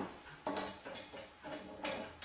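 A few light metal clicks and clinks from an AGA lifter kit's lever, chain and toggle as the toggle is seated in the hotplate lid, with a sharper knock near the end.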